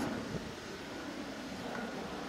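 Faint, steady outdoor background noise during a pause in a man's speech.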